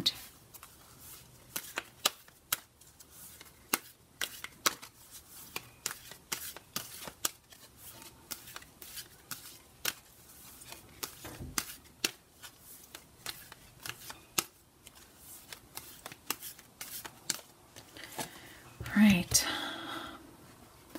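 A deck of oracle cards being shuffled by hand: an irregular run of soft, sharp card clicks and snaps as the cards slip against one another.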